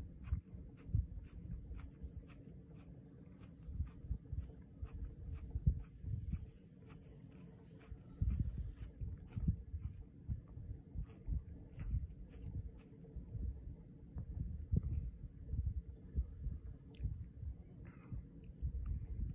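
Chewing close to the microphone while eating a small pepper pod: soft, irregular low thumps with small wet mouth clicks.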